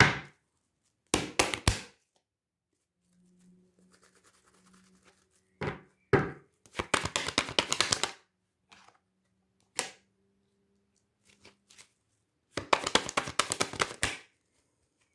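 A deck of oracle cards being shuffled by hand. There are a few single card taps and knocks early on, then two bursts of rapid card-edge flutter, one about six seconds in and one near the end.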